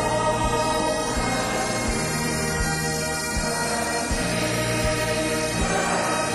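A large choir singing a hymn over sustained, reedy instrumental chords, with the bass note changing every couple of seconds.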